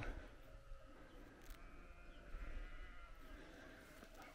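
Faint bleating of sheep, a drawn-out call in the middle.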